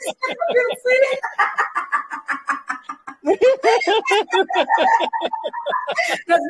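Deliberate laughter-yoga laughing: a voice laughing in quick, even 'ha-ha-ha' pulses that climb in pitch to a high note. It comes in two runs, with a short break for breath about three seconds in.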